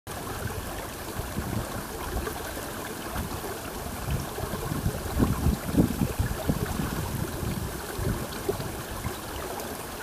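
Steady rushing outdoor ambience, a noisy wash like moving air or water, with gusty low rumbles that swell to their loudest about five to six seconds in.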